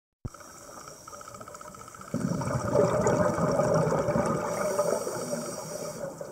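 Underwater recording: a steady low hiss, then about two seconds in a louder bubbling rush of a scuba diver's exhaled breath through the regulator that lasts about three seconds and fades.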